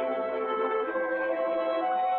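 Orchestral film score: strings holding slow, sustained notes that shift from chord to chord.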